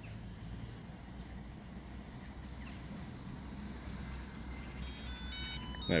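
Faint, steady low hum of a GPS bait boat's electric motors as it runs in on autopilot. About five seconds in comes a short run of electronic beeps at stepping pitches.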